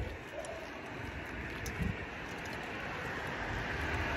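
A vehicle approaching on the street: its road noise is a steady hiss that grows gradually louder.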